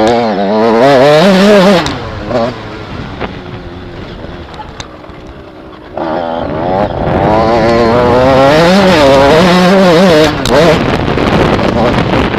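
Small off-road motorcycle engine heard from on board, revving up and down as the throttle is worked over a dirt course. It eases off about two seconds in and picks up hard again about six seconds in.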